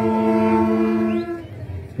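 School marching band, saxophones to the fore, holding one sustained chord that is cut off after about a second, leaving a short lull.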